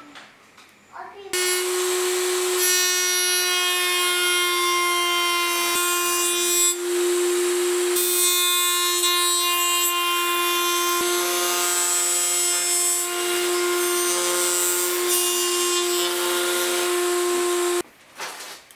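Table-mounted router running at full speed with a bearing-guided trim bit, cutting wood along a clamped template: a steady high motor whine with a cutting hiss over it. It starts about a second in and stops just before the end.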